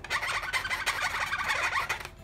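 Sharpie marker drawing on an inflated latex modelling balloon: a rapid run of small squeaks and rubs as the marker tip scrubs over the rubber to fill in a pupil.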